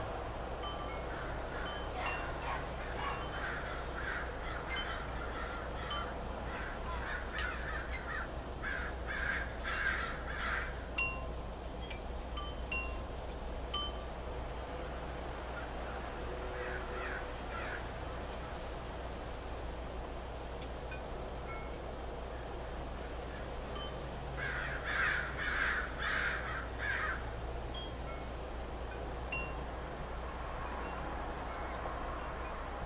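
Scattered high chime tones, with two spells of harsh, repeated bird calls: one through the first third and a shorter one near the end. A steady low hum runs underneath.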